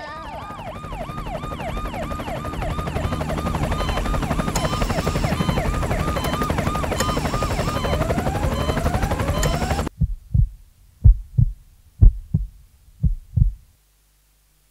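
Dramatic sound effects: a fast, rapidly repeating siren-like wail over a dense low throbbing rumble, cut off abruptly about ten seconds in. Then a slow heartbeat over silence: four double thumps about a second apart.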